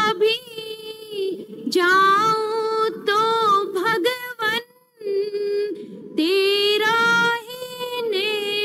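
A woman singing solo and unaccompanied into microphones, long held notes with a slight waver, with a short pause for breath about five seconds in.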